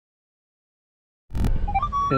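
Complete silence for over a second, then the sound cuts in abruptly with a click and a low rumble, followed by a few short electronic beeps at stepping pitches from a Minelab E-TRAC metal detector sounding on a target.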